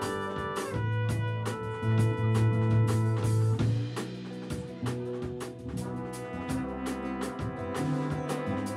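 A jazz ensemble playing live: a section of four trumpets holding chords over acoustic guitar, upright bass and drums. Short strummed or brushed strokes keep an even pulse, under a deep bass line.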